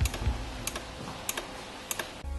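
Four sharp ticks, evenly spaced a little over half a second apart, over a faint background.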